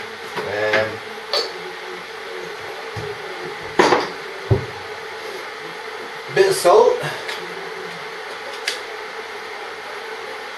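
A few sharp clicks and knocks from handling utensils and a seasoning container at a cooking pot while salt goes in, the loudest about four seconds in, over a steady low background hum.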